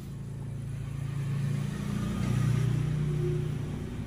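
A motor engine running, growing louder towards the middle and then fading, its pitch stepping down a little about halfway through, like a vehicle passing by.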